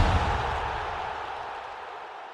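The fading tail of a deep boom sound effect from a broadcast end-card sting, dying away slowly.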